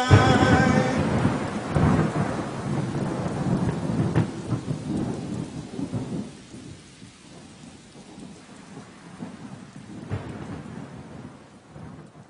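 A recording of thunder and rain. A rumble of thunder breaks in over steady rain hiss and slowly dies away, a second, softer rumble comes about ten seconds in, and the whole fades out at the end.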